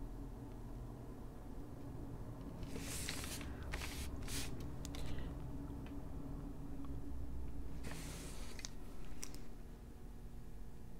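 Paper rustling and sliding in a few short bursts, a cluster near the middle and another near the end, as a drawing page is turned on a desk, over a low steady hum.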